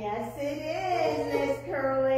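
A high, child-like voice singing with music, holding and gliding between notes, over a steady low electrical hum.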